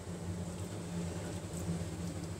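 A steady low hum, with no distinct knocks or clinks.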